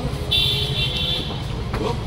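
A vehicle horn honking once for about a second, a steady high-pitched tone, over the low rumble of street traffic.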